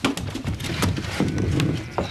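A quick, irregular run of knocks and bumps from hurried movement, ending with a wooden sash window being shoved up.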